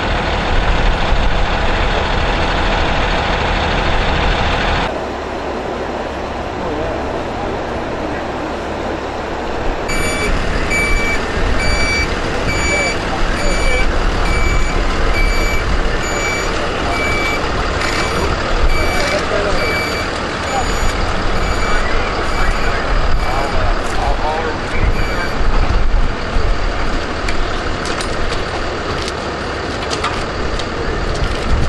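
A vehicle's reversing alarm beeping at about one beep a second for some fifteen seconds, starting about ten seconds in, over the low rumble of idling truck engines. The engine rumble is heaviest in the first few seconds.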